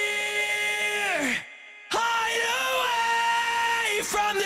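Aggressive male sung vocal with distortion from guitar pedals (a Voyager and a Sick As) re-amped and blended in parallel with the dry vocal. It sings two long held notes: the first falls away a little over a second in, and after a brief break the second holds to the end.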